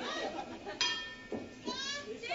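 A wrestling ring bell struck once about a second in, its bright metallic ring dying away within about half a second, over a murmuring arena crowd. The bell signals the start of the match. Near the end a voice shouts, rising in pitch.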